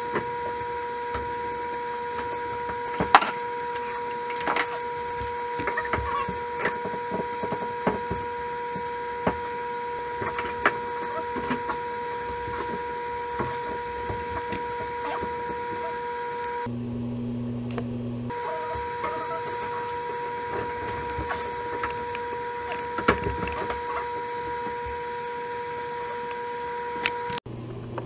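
Scattered clicks, taps and knocks of hands and tools working on a shower mixer valve's supply-line fittings, over a steady high-pitched hum. The hum drops much lower for a moment past the middle, and everything cuts off abruptly near the end.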